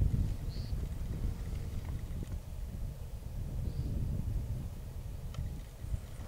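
Low, fluctuating rumble of wind on the camcorder's microphone, with a few faint clicks.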